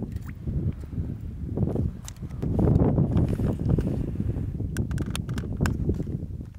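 Rumbling wind on the microphone and water being stirred by hands as a sea trout is lowered into a shallow rock pool for release. Several sharp splashes or clicks come near the end.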